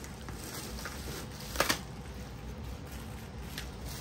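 Bubble wrap and plastic rustling and crinkling as a wrapped part is handled, with one short sharp snap about one and a half seconds in.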